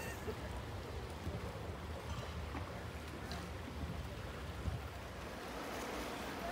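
Quiet outdoor ambience: a steady low rumble of wind on the microphone, with no distinct events.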